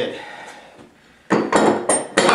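Sharp clattering knocks of wood and metal, starting about a second and a half in, as the freshly coped base shoe is handled and taken out of the coping fixture's clamp.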